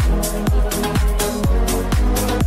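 Background electronic dance music with a steady kick-drum beat, a little over two beats a second, over held synth chords.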